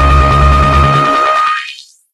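Electronic club dance music with heavy bass and a held high synth tone. About a second in the bass drops out, then the sound thins from the low end upward and fades to silence by the end, a sweeping transition out of the track.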